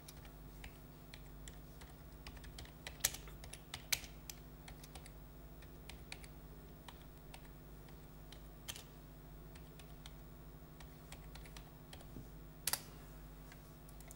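Faint typing on a computer keyboard: scattered key clicks with a few louder ones, over a low steady electrical hum.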